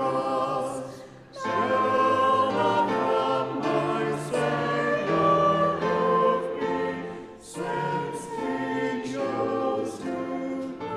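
A group of voices singing a hymn together, with short breaks between phrases about a second in and about seven and a half seconds in.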